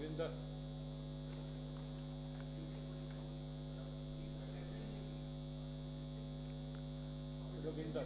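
Steady electrical mains hum with many evenly spaced tones, unchanging throughout. Faint off-microphone voices are heard briefly at the very start and again just before the end.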